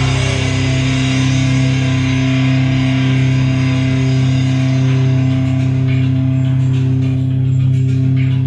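Live hip-rock band on guitar and bass holding one sustained chord that rings on steadily without a drum beat, its upper shimmer fading away in the second half.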